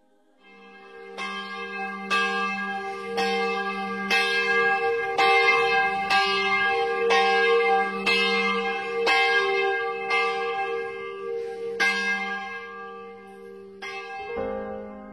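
Church bell tolling about once a second, each strike ringing on over a steady hum; it fades in from silence at the start and thins out near the end.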